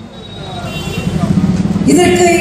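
A low engine-like rumble that grows louder over about two seconds during a pause in amplified speech, with faint talking under it.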